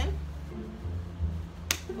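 Background music with a low bass line under it, and one sharp click near the end.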